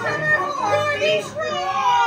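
Voices in a small group: a woman's animated, theatrical exclamation, her pitch sliding down in a long drawn-out sound near the end, with children's voices mixed in.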